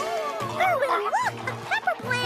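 A cartoon plant creature, a meat-eating pepper plant, makes a string of short dog-like yips and whimpers that rise and fall in pitch, over background music.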